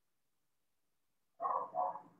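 A dog barking twice in quick succession, starting about one and a half seconds in.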